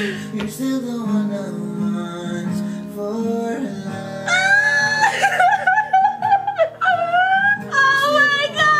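A song with guitar: instrumental for the first half, then a high singing voice comes in about four seconds in and carries the melody to the end.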